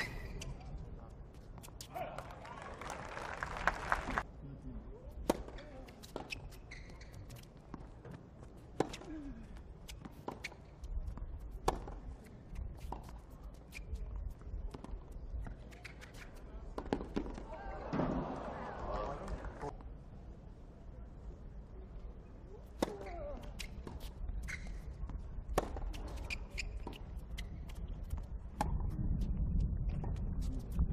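Tennis balls struck by rackets and bouncing on a hard court during rallies, heard as sharp, irregular pocks. Two brief bursts of crowd voices come about two seconds in and again around eighteen seconds.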